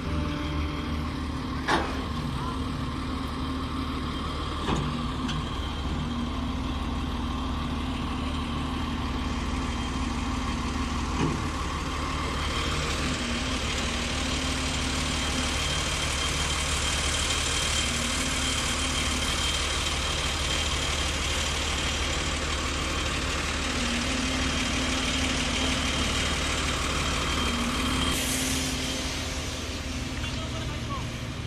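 A heavy engine running steadily, like construction machinery, with a few sharp knocks in the first part and a thin high whine through the second half.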